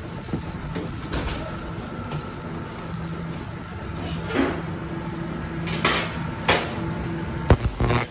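Steady hum of cleanroom equipment, with rustling and several sharp knocks as the phone is handled against a cleanroom suit and bench. The loudest knock comes near the end.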